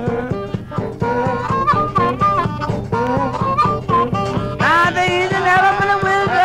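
Lo-fi recording of a downhome Chicago blues trio: harmonica and guitar over a steady drum beat, with a loud rising wail about four and a half seconds in.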